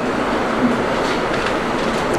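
Steady background noise in a room: an even hiss with no distinct events.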